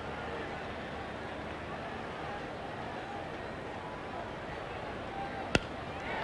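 Steady ballpark crowd murmur, then near the end a single sharp crack of a wooden bat hitting a pitched baseball.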